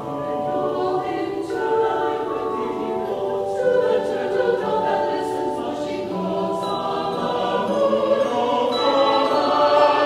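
Mixed choir of men's and women's voices singing held chords.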